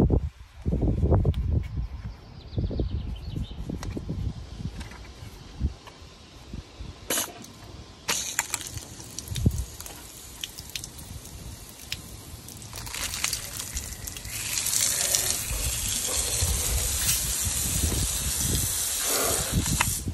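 Water running from a Kärcher multifunction garden-hose spray gun. A faint hiss starts about eight seconds in and grows much louder from about thirteen seconds as the stream splashes onto wet asphalt. A few low knocks come in the first two seconds.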